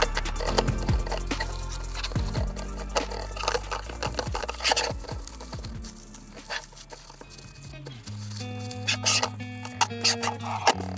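Background music with sustained low notes whose chord changes about four and eight seconds in, with scattered short clicks over it.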